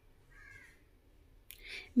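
A single faint caw of a crow, about half a second long, heard about half a second in over a quiet room. Near the end comes a short breath.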